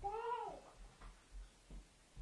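A domestic cat meowing once: a single call that rises and falls in pitch, about half a second long, followed by a few faint low thuds.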